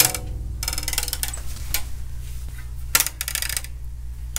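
A bass guitar string slackened to very low tension, plucked once and ringing with a deep, slow-vibrating low note. A metallic buzzing rattle comes in twice, about half a second in and again near three seconds, as the loose string slaps against the frets.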